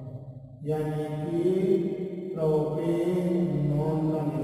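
A man's voice drawn out in long, steady held tones, in two stretches, with a short silence just after the start and a brief dip about two and a half seconds in.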